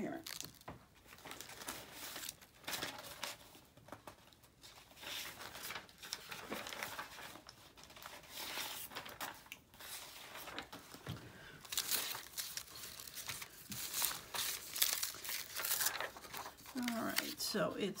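Plastic packaging and a sheet of paper being handled, crinkling and rustling in many irregular bursts that get louder in the last few seconds.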